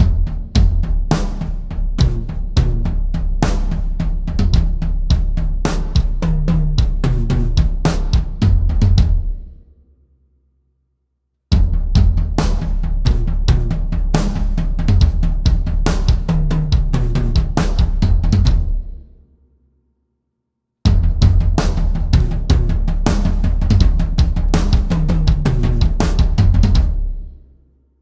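Drum kit playing a tom-based jungle groove, heavy on the toms with bass drum, snare and cymbals, hit hard. It is played in three passes, each fading out into a short silence.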